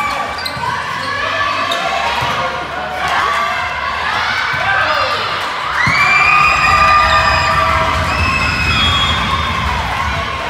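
Volleyball rally on an indoor court: sneakers squeaking on the sports floor and players calling out, echoing in a large gym hall. The squeaks are densest in the second half.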